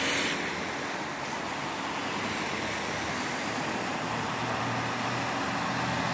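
Articulated lorry with a MAN tractor unit driving slowly round a roundabout, its diesel engine running under steady road noise. It grows a little louder near the end as it comes closer.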